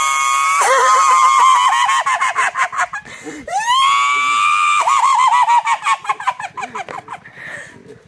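High-pitched shrieking laughter: a long held squeal that breaks into a rapid cackle, and then the same again, the second squeal starting about three and a half seconds in.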